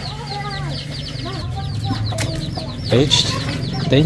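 Chickens clucking around the yard, with many rapid high cheeps from chicks over a steady low hum.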